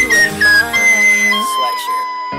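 A recorder playing the song's melody in a few clear, held high notes over the backing music, settling into a lower long note in the second half.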